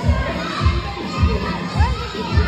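Dance music with a steady thumping beat, a little under two beats a second, played through loudspeakers in a large gym, with a crowd of young children shouting over it.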